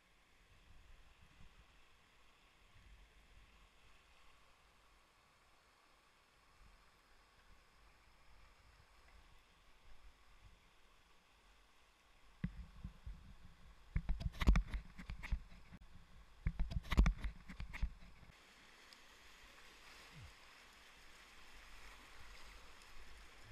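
River water rushing faintly, growing louder near the end as the kayak moves out into a rapid. In the middle come several seconds of close knocks and low rumbling at the microphone, in two loud clusters.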